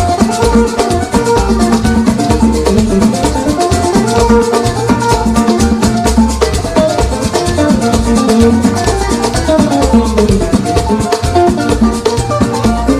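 Live band music played loud and steady without vocals: electric guitar over bass, drum kit and percussion with a steady beat.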